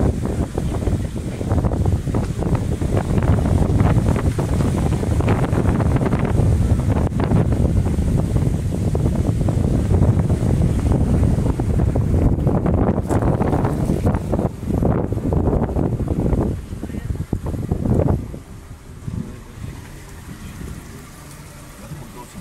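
Wind buffeting a phone microphone held at a moving car's window: a loud, uneven low rumble that drops away about four seconds before the end.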